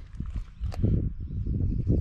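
Footsteps on gravel with a few knocks, the sharpest about three-quarters of a second in.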